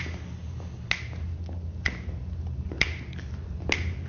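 A metronome-style click track from the practice audio, playing a sharp click a little under once a second over a steady low hum. The clicks mark the beat, the time the dancers step to.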